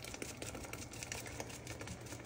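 Faint scraping and small irregular clicks of a spoon pressing chile purée through a plastic mesh strainer.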